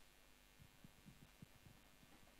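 Near silence: room tone, with a few faint, short low thumps through the middle.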